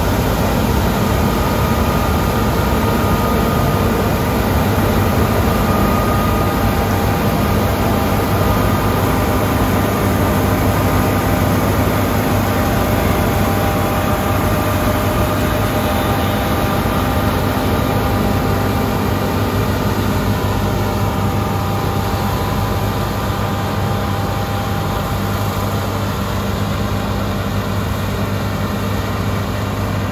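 John Deere S785 combine harvester cutting wheat close by, its engine and threshing machinery running with a steady hum and a faint steady whine. The sound gets a little quieter over the last several seconds as the combine moves away.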